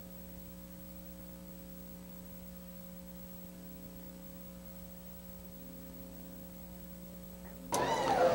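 Steady electrical hum with faint hiss, a set of unchanging low tones. Near the end the sound jumps suddenly louder as the programme audio cuts in.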